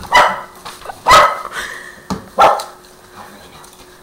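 A dog barking three times, about a second apart, each bark short and loud.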